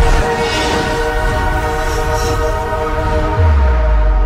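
Animated logo intro sting: a held, horn-like chord of steady tones with a swelling whoosh over it, then a deep bass boom comes in about three and a half seconds in.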